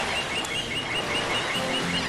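Surf washing on a beach with a bird chirping rapidly and evenly, about six calls a second; the song's music starts near the end.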